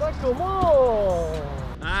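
A drawn-out vocal exclamation, one long 'ooh' that rises and then slides slowly down in pitch, as a reaction to a shot on goal. A short 'ah' follows near the end.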